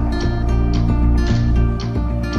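Background music: an instrumental stretch of a song between sung lines, with guitar strumming over a steady bass.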